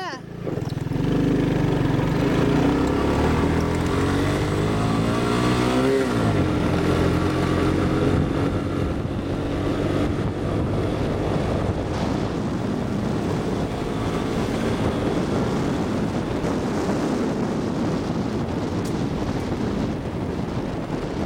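Honda ATC three-wheeler engine pulling away and accelerating, its pitch climbing for about six seconds and then dropping sharply at a gear change. After that it runs on steadily under way.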